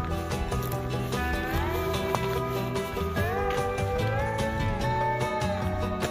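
Background music: held notes that slide up and down in pitch over a steady low beat.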